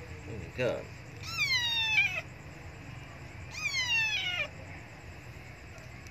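A young tabby kitten meowing twice, each a long high cry that falls in pitch, about two seconds apart: an abandoned kitten crying for food.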